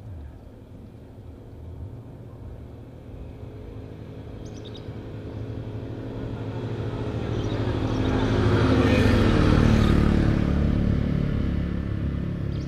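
A motor vehicle's engine approaching and passing on the road. It grows steadily louder over about eight seconds, is loudest about nine to ten seconds in, and the engine note falls as it goes by.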